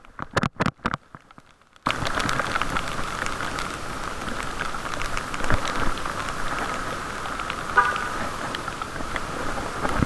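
Rain and wet-road noise muffled by a waterproof camera case on a moving bicycle. A few sharp knocks come first. About two seconds in, a steady hiss starts suddenly and runs on, full of small ticks from drops striking the case.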